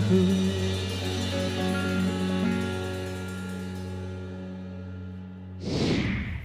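A band's final chord ringing out on electric guitar, held steady and slowly fading away, then a short whoosh near the end.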